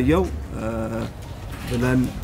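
A man speaking Amharic into microphones, his low voice drawing out long, steady held syllables.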